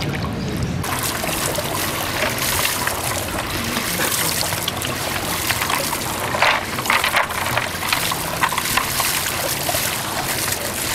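Swimming-pool water trickling steadily. It starts abruptly about a second in, with a few brief louder spots later on.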